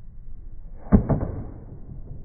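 Tennis racket striking the ball once on a practice groundstroke: a single sharp hit about a second in, with a short decaying tail after it.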